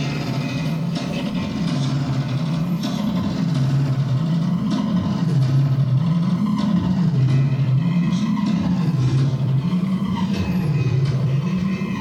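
Electronic feedback drone from a looped chain of effects pedals: a low tone whose pitch sways slowly up and down about every two seconds, over a bed of noisy hiss.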